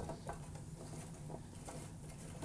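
Hands moving oiled asparagus spears about in a metal roasting pan, laying them flat: faint, scattered light clicks and rustles of the spears against the pan, over a steady low hum.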